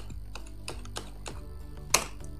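Computer keyboard being typed on, a run of separate key clicks, with one much louder sharp click near the end.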